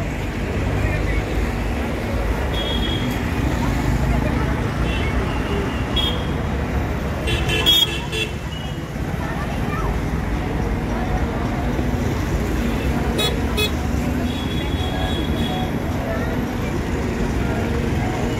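Busy street noise: a crowd of people talking over a steady traffic rumble, with a few short car-horn toots scattered through it.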